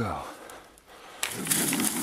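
A loud scuffling rustle of brush and snow starting about a second in, as the bobcat is let go from the foothold trap and scrambles free.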